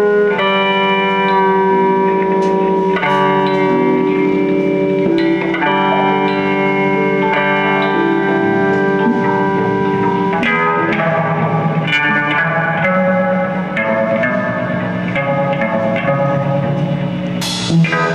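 Semi-hollow electric guitar played live through an amplifier: ringing, sustained chords that change every few seconds, with a marked change about ten seconds in. A sharp hit comes near the end.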